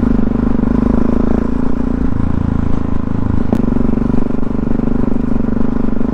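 Supermoto motorcycle engine running at a steady cruise, heard from a helmet-mounted camera, with one sharp click about three and a half seconds in.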